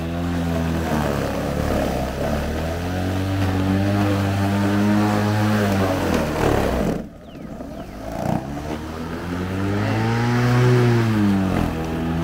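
EGO LM2100 battery electric lawn mower running under load while cutting and bagging thick, long grass; the motor's whine dips and rises in pitch as the blade meets heavier and lighter patches. About seven seconds in it goes briefly quiet, then winds back up.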